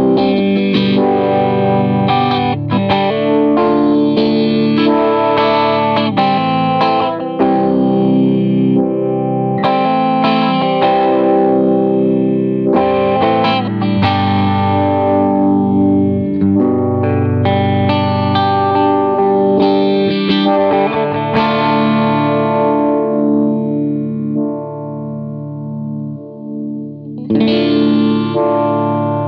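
Electric guitar, a PRS CE 24, played through a Poison Noises Lighthouse photo-vibe pedal: strummed chords with the pedal's swirling, throbbing modulation on them. Later a long chord rings out and slowly fades with a steady pulse, and a fresh chord is struck near the end.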